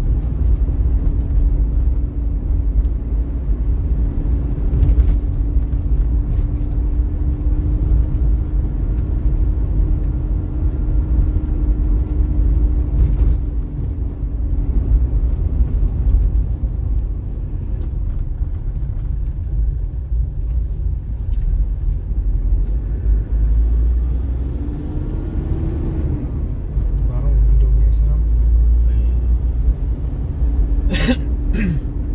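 Vehicle driving on a paved road: a steady low rumble of engine and road noise, with a steady hum through the first half that fades about halfway, and a brief rising-then-falling tone near the end.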